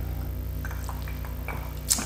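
Steady low hum with a few faint small clicks, then a sharp clink near the end as a whiskey glass is set down on a kitchen benchtop.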